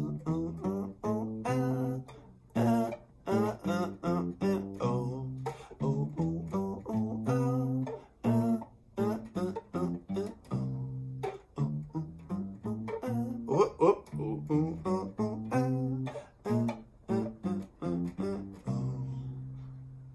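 Acoustic bass guitar playing a simple one-four-five blues bassline in C, plucked notes in a steady repeating groove with a couple of short breaks. A low note is let ring near the end.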